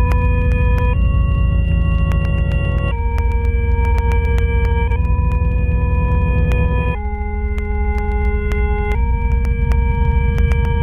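An eerie electronic drone: a loud, held synthetic tone with a few overtones, stepping to a new note every one to two seconds over a deep rumble, with frequent faint clicks.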